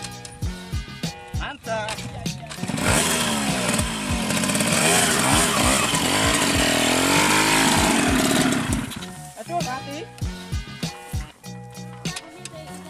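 Trail motorcycle engine revved hard and repeatedly, its pitch climbing and falling, for about six seconds from about three seconds in, while the stuck bike is pushed up a steep bank. Background music with a beat plays before and after.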